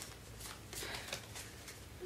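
Tarot cards being handled and shuffled: a series of soft, faint card clicks and rustles.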